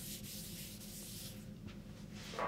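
Whiteboard eraser rubbing across a whiteboard: a faint, steady swishing that stops about a second and a half in, followed by a single light tick.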